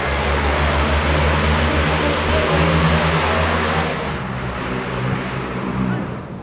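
Loud engine drone of something passing: a steady low hum with a hiss over it, the hiss fading about four seconds in while the hum carries on.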